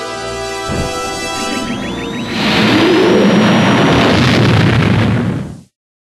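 Orchestral film music, then a whine rising in pitch that opens into a loud, noisy blast like an explosion or a craft's engine. It cuts off suddenly just before the end.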